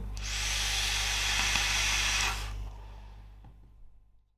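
Puff on an e-cigarette: a steady hiss of air drawn through the device as the coil vaporises the liquid, lasting about two seconds and stopping about two and a half seconds in.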